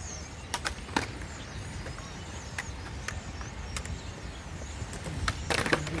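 Outdoor street ambience: a steady low rumble with a few sharp clicks, the first ones about half a second and a second in.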